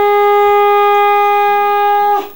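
Conch shell (shankha) blown for arati in one long, steady blast held at a single pitch.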